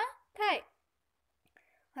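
A woman's voice speaking: one short word about half a second in, then a pause of well over a second with almost nothing to hear, before speech starts again at the very end.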